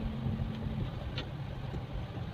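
Steady low rumble of a car driving, heard from inside the cabin, with one short tick a little past halfway.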